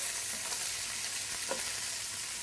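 Potatoes and onions frying in oil in a frying pan, sizzling with a steady hiss while being stirred and turned with a wooden spatula.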